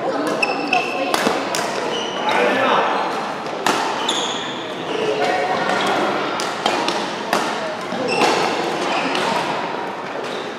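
Badminton rackets hitting a shuttlecock in a fast doubles rally: sharp, irregular hits, with short high squeaks from court shoes between them and voices in the background.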